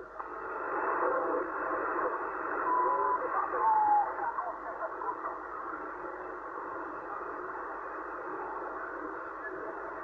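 Yaesu transceiver receiving the 27 MHz CB band through its speaker while the dial is tuned upward: static hiss with fragments of distant voices and a couple of short whistles in the first few seconds, then steady static.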